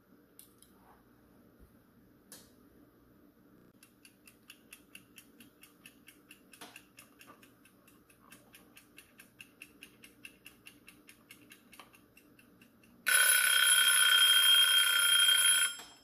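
A timer ticking quickly, several ticks a second, then a loud alarm ringing for about three seconds near the end, signalling that the cooling time is up.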